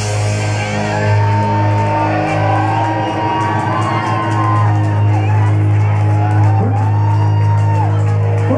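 A rock band's final chord ringing out live: bass and distorted electric guitars sustain one steady low note after the drums stop, with wavering high pitched tones over it, while the audience whoops and shouts.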